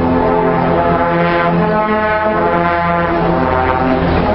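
Brass band with trombones and low brass playing long sustained chords, the harmony moving every second or so, with a deep bass line underneath.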